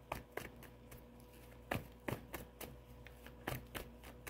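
A deck of tarot cards being shuffled by hand: a faint, irregular run of short card taps and snaps.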